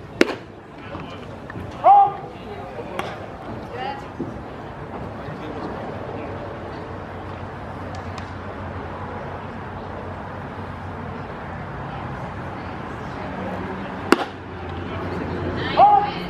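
Baseball popping into the catcher's mitt, followed a couple of seconds later by the home-plate umpire's loud strike call. It happens twice, near the start and again near the end, over faint chatter from the field and stands.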